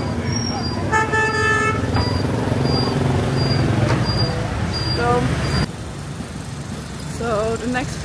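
Street traffic noise with a vehicle horn held for nearly a second, about a second in, and a shorter horn toot near the five-second mark. Between them a high electronic beep repeats about every two-thirds of a second. Near the end the sound drops to a quieter street background.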